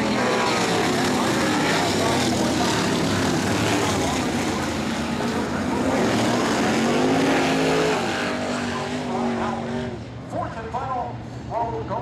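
A pack of winged sprint cars' V8 engines running as the field rolls around the dirt oval. The pitch rises and falls as cars pass, and the sound is loud for most of the stretch, easing about ten seconds in as a PA announcer's voice comes through.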